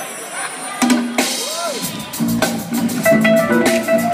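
Live band kicking into a song: a couple of drum hits, then about two seconds in the drum kit settles into a steady beat with bass and guitar or keyboard notes over it.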